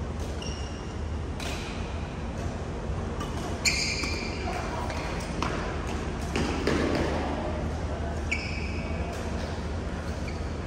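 Badminton rally: sharp racket strikes on the shuttlecock, three of them with a high ringing ping, the loudest a little under four seconds in.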